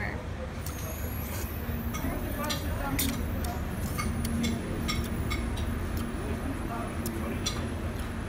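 Steady low rumble of road traffic, with scattered short light clicks and clinks over it.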